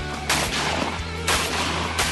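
Two shotgun shots about a second apart, over background music.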